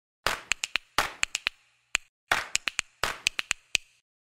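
Opening music of a news talk show made of dry percussion: a clap-like hit followed by a quick run of three sharp clicks, repeated four times in an even rhythm, with dead silence between the hits.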